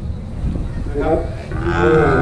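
A cow moos once: one long, steady call that begins near the end.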